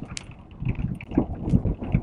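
A car driving on an unpaved dirt road, heard from inside the cabin: a steady low rumble of engine and tyres with uneven low thumps from the rough surface.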